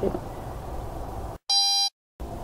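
Low background noise of a voice recording, then the sound drops out to dead silence and a short, steady electronic beep of about half a second sounds near the end, marking where part of the recording is skipped.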